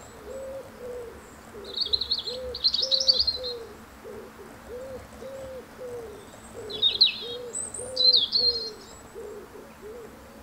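Birds calling in woodland: a steady run of short hooting notes, about two a second, with two bursts of high chattering song, one about two seconds in and one near the end.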